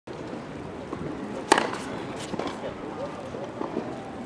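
Tennis racket striking the ball on an overhead smash, one sharp pop about one and a half seconds in, followed by a few fainter clicks. Background chatter of voices throughout.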